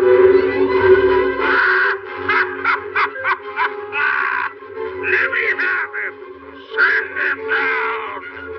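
Cartoon devil cat laughing in a string of short, harsh cackles over sustained orchestral chords, with a low rumble in the first couple of seconds.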